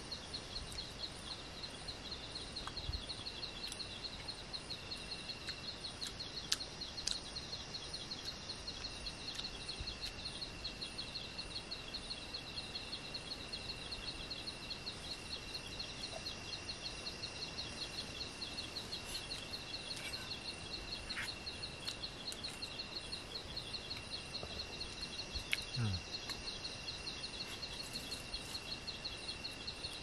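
Night-time forest insect chorus: a rapid, evenly pulsing high chirp over a steady high whine, going on unbroken. A few faint clicks come through now and then.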